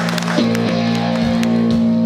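Amplified electric guitar and bass holding a steady sustained note between songs, with a few low thumps in the second half.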